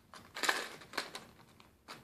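Plastic blister pack and card of a fishing-lure package crinkling as it is handled and pried open, in a few short bursts about half a second and a second in.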